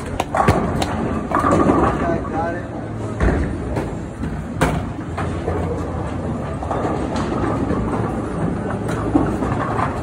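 Bowling alley din: a low rolling rumble of bowling balls on the lanes, with sharp knocks and pin clatter a few seconds in, over background voices.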